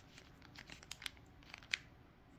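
Sealed 2023 Topps Chrome card packs crinkling faintly as they are leafed through in the hand, a scatter of small crackles with one sharper crackle near the end.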